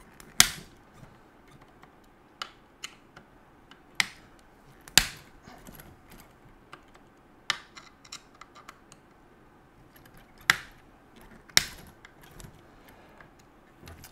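Hex driver working the engine-mount screws on the underside of a nitro RC car chassis: irregular sharp clicks and taps of the tool and metal parts, a second or few apart, as the screws are loosened and the engine is handled.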